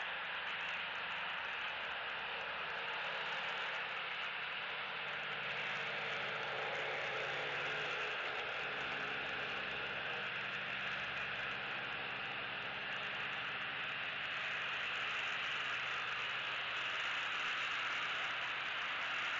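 Steady road-traffic noise from a nearby road: an even hiss of tyres with a faint low engine hum that swells slowly as cars pass.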